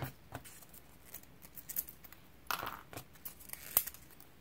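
Susugang craft sticks being snapped into small pieces by hand over paper: a few separate soft snaps and clicks, with a short crackle past the middle and the sharpest click near the end.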